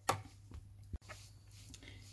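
Faint handling sounds of a spoon working thick rosehip purée through a fine mesh sieve: a short click at the start, then soft scraping and squishing. There is a brief gap of silence about halfway through.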